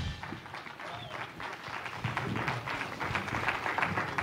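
Audience applause with many hand claps and a few voices, right after a live band's song stops abruptly.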